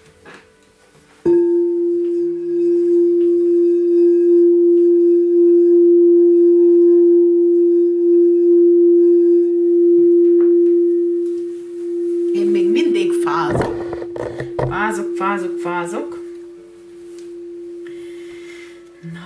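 Quartz crystal singing bowl struck about a second in, then sounding one loud, steady ringing tone with a slight pulsing that holds to the end. For a few seconds in the latter part, other busier sounds sit over the tone.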